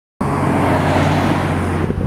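Road traffic noise: a car passing close by, loud and rushing with a low hum, easing off near the end.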